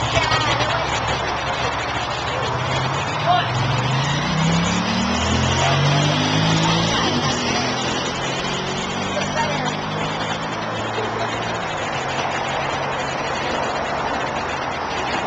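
Street traffic noise with a motor vehicle accelerating past, its engine pitch rising from about four seconds in before levelling off, over background voices.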